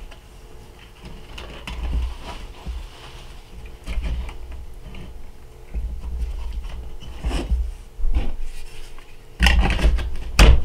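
Scattered plastic clicks, rubbing and low knocks as the belt arm and guide of a Work Sharp electric knife sharpener are handled to fit a coarse belt, the motor off, with a louder clunk near the end.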